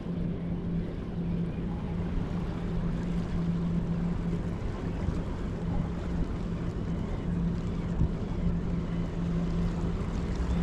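Steady low engine hum of a distant vessel in the harbour, over a constant rumble of wind on the microphone.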